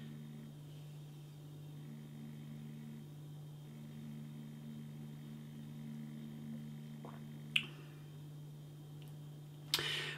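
Quiet room tone with a steady low electrical hum, broken by a single short click about seven and a half seconds in.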